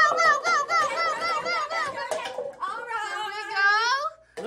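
A high voice vocalizing with a wavering, up-and-down pitch, about four wobbles a second, then a long "ooh" that rises and falls near the end.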